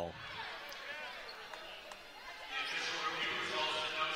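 Basketball arena ambience at a stoppage: background crowd chatter and voices in a large gym, growing louder about halfway through, with a few short squeaks from sneakers on the hardwood court.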